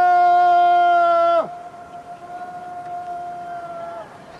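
A man's long, drawn-out shout of "Hurrah!", loud and held on one pitch, dropping away about one and a half seconds in. A quieter held tone lingers after it.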